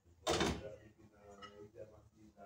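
A cooking pot clanks once against the stove as it is handled, loudest about a quarter second in, with quieter knocking after.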